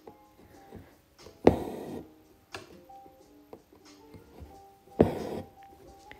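Quiet background music, with two loud, sudden noisy sounds about half a second long, at about a second and a half and at five seconds: embroidery thread pulled through the hooped fabric close to the microphone.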